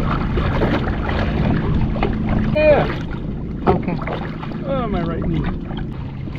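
Yamaha jet ski's engine running steadily at low speed, a little quieter after about three seconds. A person's voice makes two short sounds over it.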